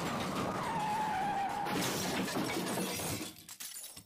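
Car crash sound effect: tyres skidding with a squeal that slides down in pitch, and glass shattering. It breaks up into scattered clinks of debris and dies away about three seconds in.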